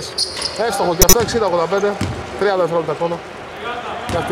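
A basketball striking hard once, about a second in, as a shot comes down at the basket on an indoor hardwood court, under a man's running commentary.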